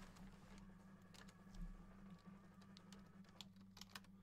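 Near silence: faint, scattered light clicks over a low steady hum.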